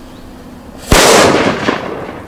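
Flash-powder firecracker exploding: one sharp, loud bang about a second in, followed by a rumbling tail that dies away over the next second, with a smaller knock near the end.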